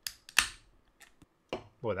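Beer can tab being cracked open: a small click, then a sharper pop with a short fizzing hiss as the can vents.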